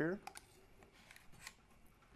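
Thin metal scraper blade working under a PLA print on a glass build plate: a few faint scrapes and clicks as it pries the print loose.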